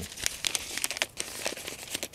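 A paper seed packet crinkling and crackling in the fingers as it is handled, in quick irregular crackles.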